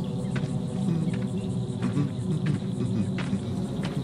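Outdoor insect sound: a steady buzzing with short, sharp cricket-like chirps or clicks recurring every half second or so.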